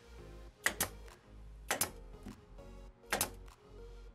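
Pneumatic 18-gauge brad nailer firing nails into plywood: three sharp shots, each a quick double crack, spaced about one to one and a half seconds apart, over background music.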